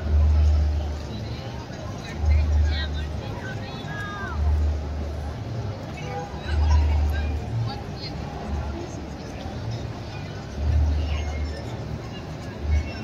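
Busy street with background crowd chatter. A deep rumble swells on the microphone about every two seconds and is the loudest sound.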